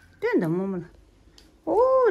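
A child's voice: one drawn-out call that falls in pitch, then a high-pitched voice starting to speak near the end.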